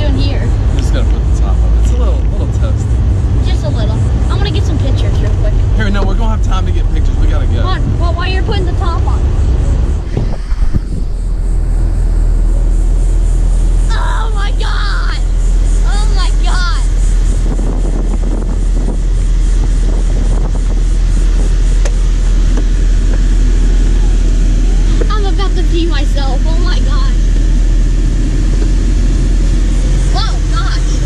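Porsche 911 Targa GTS flat-six engine and road noise heard from inside the open-top cabin while driving, a steady low rumble. After a sudden break about ten seconds in, a steady low hum continues with the car stopped.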